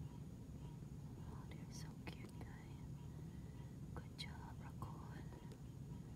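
Quiet whispering in two short spells, about a second and a half in and again about four seconds in, over a steady low hum.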